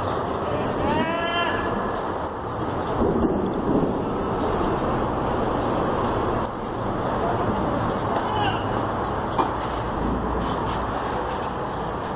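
Steady hum of road traffic, with a short voiced call about a second in and a single sharp knock later on.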